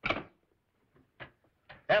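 Desk telephone handset set down on its cradle: a short clatter at the start, then a few faint clicks.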